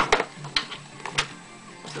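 Scissors cutting through clear plastic thickened with a layer of hot glue: four sharp snips, two close together at the start, then one about half a second in and one just after a second.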